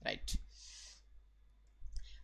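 A single sharp click, followed by a short soft hiss, then a near-silent pause.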